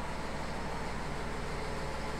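Steady background room noise: a low hum with an even hiss underneath.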